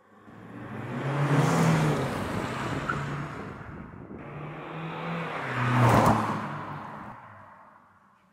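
Mercedes-Benz C-Class diesel sedan driving past twice, its engine note and tyre rush swelling and fading each time. The second pass, about six seconds in, is the louder and sharper whoosh.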